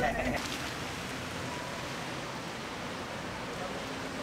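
A boot crunching in snow right at the start, then a steady outdoor hiss with no distinct events.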